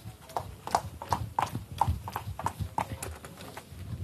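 Footsteps of sneakers on a hard wood floor, about three steps a second, each a sharp click with a low thud.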